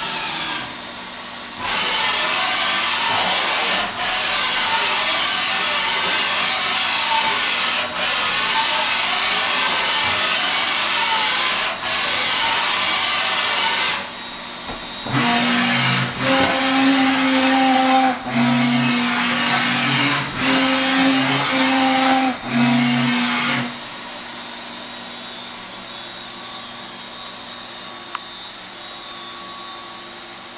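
Doosan MV6030 vertical machining center moving its axes at rapid traverse in a series of back-and-forth moves with brief stops between them. Near the middle the moves turn into a pitched whine that stops and restarts every second or two. The last few seconds hold a quieter steady machine hum.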